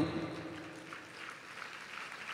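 A pause in a man's amplified preaching: the last of his voice dies away at the start, leaving faint room tone.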